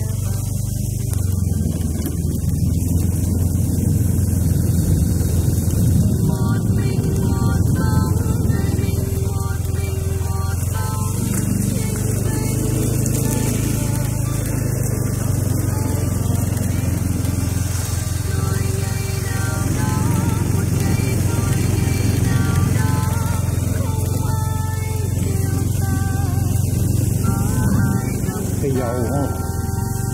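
A motorbike's engine and road noise droning steadily while riding, with background music over it.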